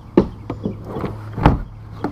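Rigid plastic front hatch lid of a Jackson Kraken kayak being handled and lifted open: a sharp knock just after the start, a few light clicks, then a louder knock about one and a half seconds in.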